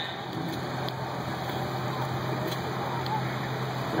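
An engine running steadily with an even low hum, over open-air background noise.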